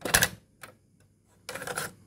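Piano-key controls of a Sharp GF-4500 boombox's cassette deck clacking as they are pressed, a sharp mechanical clack that stops the fast-forwarding tape. Near the end comes a short rasp as the eject mechanism opens the cassette door.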